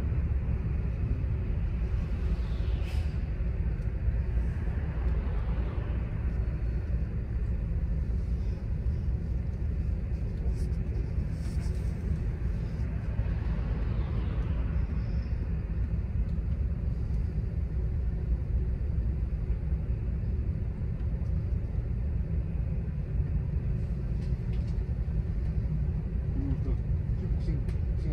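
Steady low rumble of a city bus's engine and tyres heard from inside the cabin while driving, with a few brief swells of louder noise, near the start and about halfway through.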